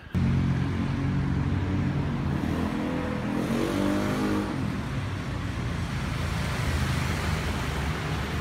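A motor vehicle engine running close by over a steady hiss of street traffic. Its pitch rises briefly from about three seconds in, as it speeds up, then falls back.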